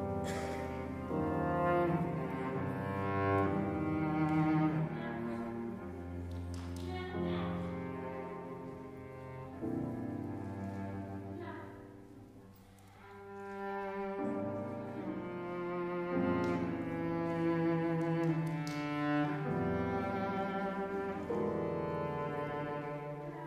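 Classical cello and piano duo: the cello plays long bowed notes over the piano. The music swells and fades, with a quiet dip about halfway through before it builds again.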